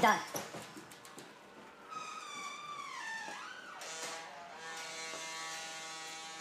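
A pitched, buzzy sound glides down in pitch for about a second, then a steady buzzy tone is held near the end.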